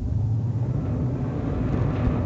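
Engine of a 32-foot lifeguard boat being throttled up and running with a steady low drone.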